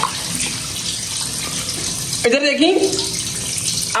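Water running steadily from a tap into a bathroom washbasin, splashing over a head held under the stream as hair is rinsed.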